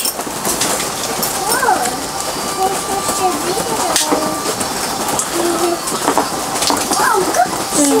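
Hard plastic clicks and handling of a GoPro camera being worked out of its clear waterproof housing, with one sharp click about four seconds in. Steady rain hiss and quiet voices run underneath.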